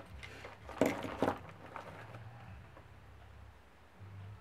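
Two sharp clacks about a second in amid light plastic-bag rustling, from handling a utility knife and a freshly cut-open plastic bag. A faint low hum follows.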